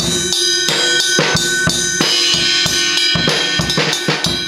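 A drum kit played in a fast, steady beat: snare and bass drum hits under a crash cymbal that is struck and rings throughout. It starts abruptly and is loud.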